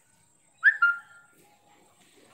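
Chalk squeaking on a blackboard during writing: two short high squeaks about two-thirds of a second in, the first sliding down in pitch, the second held briefly at one pitch.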